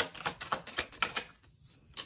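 Tarot cards being handled and shuffled: a quick run of light, crisp card clicks for about a second, then one more snap of a card near the end.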